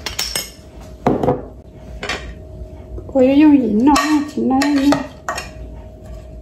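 Metal spoon clinking against a glass spice jar and a ceramic bowl in a few separate taps, one with a short ring, as seasoning is knocked out. In the middle comes a louder wavering pitched sound lasting about two seconds.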